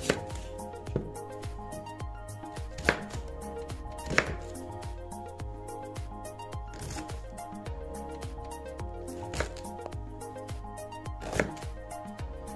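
Kitchen knife slicing through a red onion on a wooden chopping board, the blade knocking on the board at irregular intervals, about half a dozen sharper knocks standing out. Background music plays throughout.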